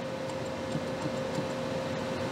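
Steady background hiss with a faint steady mid-pitched tone and a few faint ticks: room tone around running video equipment.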